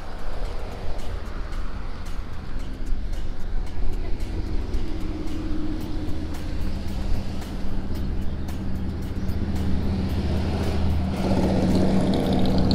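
Street traffic passing close by: car engines and tyres going past, then a motorcycle engine hum growing louder near the end as it approaches.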